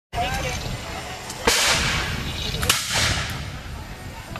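Two black-powder musket shots about a second apart, each a sharp crack followed by a long fading echo.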